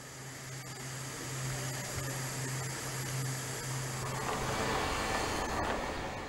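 Steady mechanical hum and hiss of machinery inside a solar power plant's pipe shaft, with a low droning tone that fades out about two-thirds of the way through.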